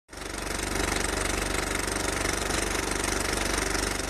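Synthesized intro sound effect: a dense, steady rumbling texture with fast, even pulsing and a deep low end, starting to fade near the end.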